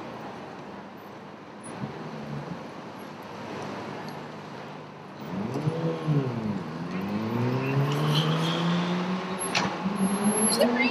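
City street traffic: a steady hum at first, then about halfway through a motor vehicle's engine pulls away. Its pitch rises and falls once, then starts lower and climbs steadily as it accelerates. A few sharp clicks come near the end.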